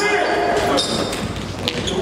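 Live basketball game sound in a gym: short high sneaker squeaks on the court, a ball knocking and bouncing, and indistinct player shouts echoing in the hall.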